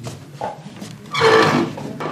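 A person's voice breaking into a loud, strained cry a little after a second in, lasting about half a second.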